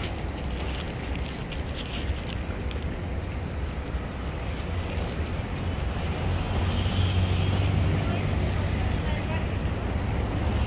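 Steady low rumble of road traffic, growing a little louder from about six seconds in as a vehicle passes.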